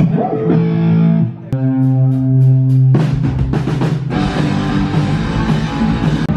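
Rock band playing live: electric guitar and bass guitar hold chords, then the drum kit with cymbals comes in about three seconds in and the full band plays on.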